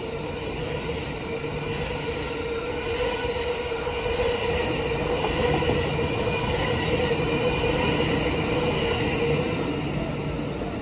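E26 series sleeper coaches running through a station at speed, the wheels rumbling on the rails with a steady high squeal. The sound grows louder towards the middle and eases as the last car approaches.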